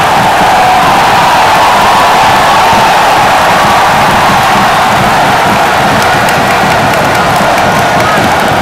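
Large football stadium crowd cheering, loud and steady, with many voices singing together.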